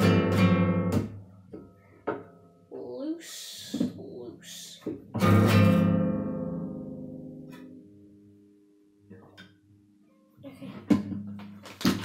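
Small acoustic guitar strummed across its strings: a loud strum at the start and another about five seconds in that rings out and slowly fades over a few seconds. A string has just been slackened at the tuning peg, so the chord sounds loosened and out of tune.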